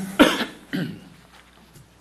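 A person coughing: a sharp cough about a quarter-second in, then a second, softer one about half a second later.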